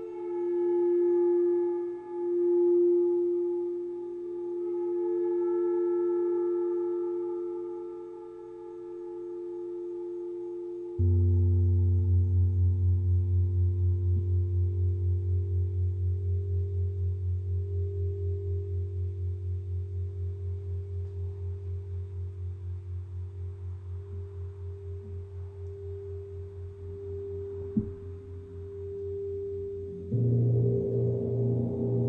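Singing bowls ringing in pure, slowly swelling and fading tones. About eleven seconds in, a deep low bowl-like tone is struck; it pulses quickly and slowly dies away, with a single click near the end.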